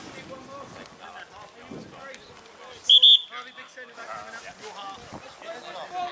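Referee's pea whistle blown about three seconds in: one short, loud, trilling blast in two quick pulses, signalling the set piece to be taken. Distant players' shouts around it.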